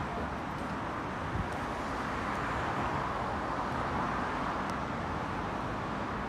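Steady road traffic noise, a continuous hum that grows a little louder in the middle and eases off again.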